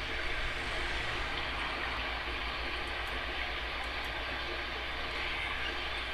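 Steady background hiss over a low hum, with no speech.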